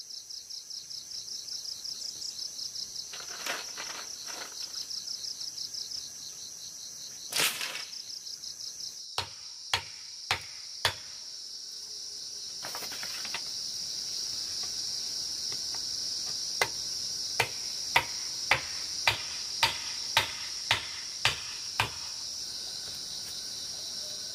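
Insects chirring in the background, first in fast pulses, then as a steady high buzz. Over them, a tool strikes bamboo in sharp knocks: four about nine seconds in, then a run of about ten, roughly two a second, near the end.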